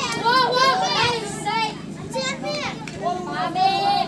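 Several voices shouting and calling over each other during a football game, high-pitched and overlapping throughout.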